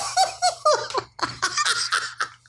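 A man laughing helplessly in quick, high-pitched, breathy bursts, about four a second.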